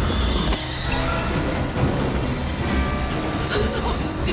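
Dramatic film score over a chase soundtrack, with a car's engine and road noise running beneath the music.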